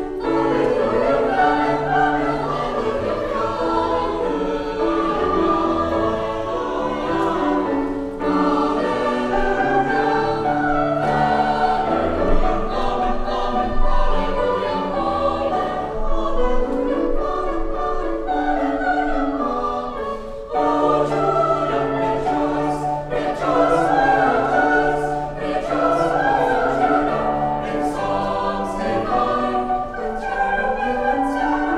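Small mixed choir of women's and men's voices singing together, several voices sounding at once in long phrases without a pause.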